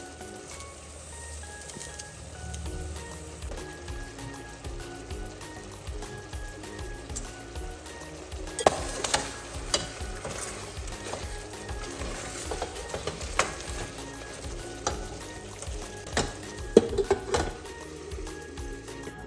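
Mutton curry sizzling in a steel pot on the stove while it is stirred, with scattered knocks and clinks of the spoon and lid against the pot from about halfway in. Faint background music underneath.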